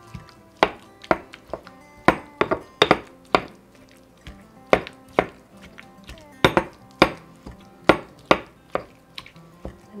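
Stone pestle knocking against a stone mortar (molcajete) while mashing guacamole: irregular sharp knocks about one or two a second, each with a brief ring, pausing around four seconds in.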